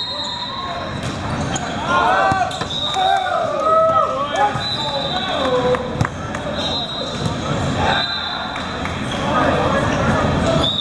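Indoor volleyball rally: players shouting calls, with a few sharp smacks of the ball being hit or landing, the loudest about six seconds in as the point ends.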